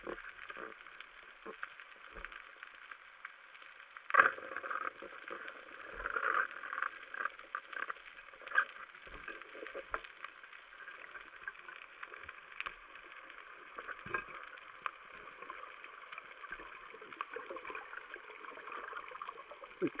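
Underwater sound on a reef: a steady hiss full of fine crackling and clicking, with a sharp, loud knock about four seconds in and a few louder clusters of clicks soon after.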